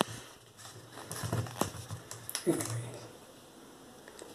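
Handling noise from a phone being moved around: rustles and a few sharp clicks, under a low, muffled voice.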